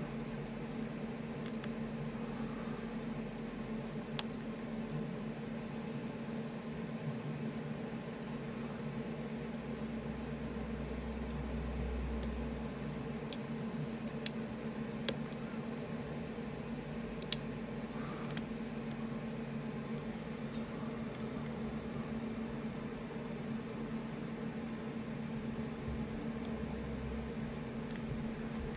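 Lock pick working the pins inside an Assa Ruko Flexcore high-security cylinder: a few faint sharp metallic ticks, one about four seconds in, a cluster a little before halfway and one more soon after, over a steady low hum.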